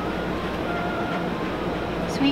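A steady low rumble of background noise, even throughout, with a few faint thin tones drifting in.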